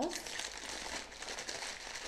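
Soft crinkling as something is handled.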